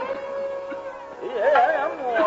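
Live Hindustani classical performance of Raag Darbari: a steady held note over the drone, then a melodic line with slow, oscillating pitch glides enters a little past the middle and grows louder.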